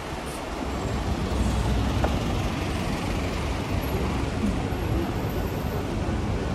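Street traffic: the engines of vehicles running close by on a narrow city street, a low rumble that grows louder about a second in and then holds steady.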